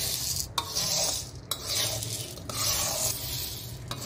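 A metal spoon stirring and scraping split lentils around a kadai as they roast, the grains rustling against the pan. It comes in about four sweeps, roughly one a second.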